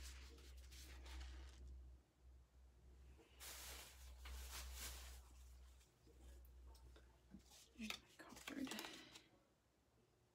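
Faint rustling and rubbing of a damp paper towel being handled and swiped through wet acrylic paint on a canvas, in three short spells, the last with small crackles, over a low steady hum.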